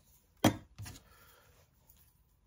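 A sharp knock about half a second in, then a fainter one: a small hand tool being set down and another picked up from a hard surface.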